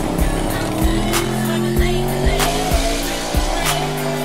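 Music with a steady beat laid over a drag-racing pickup's burnout: tyres squealing and the engine revving, its pitch climbing slowly.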